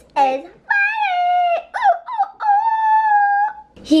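A high-pitched voice gives a short falling cry, then holds two long, high, steady notes of about a second each, with brief swoops between them.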